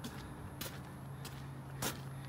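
Footsteps on a garden path and loose soil: a few short, sharp scuffs, the loudest a little before the end, over a steady low hum.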